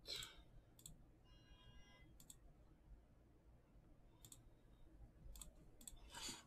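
Near silence broken by about half a dozen faint, sharp clicks from a computer mouse and keyboard, spread out through the stretch.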